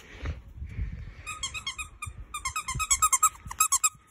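Puppy giving a rapid run of short, high-pitched squealing whines and yips while being wrestled in play, starting about a second in and growing louder near the end. Low knocks from the phone being handled come first.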